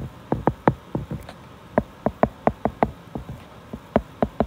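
Stylus tip tapping and clicking on a tablet's glass screen while writing by hand, a quick irregular run of sharp taps, about four a second, with a brief pause about a second and a half in.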